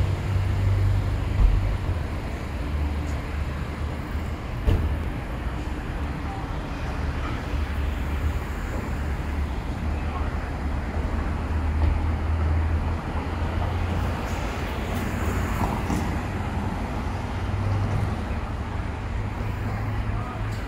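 Steady low rumble of road traffic and idling vehicles along an airport terminal's departure curb, with faint voices in the background.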